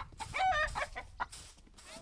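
A chicken clucking: a quick run of short calls in the first second.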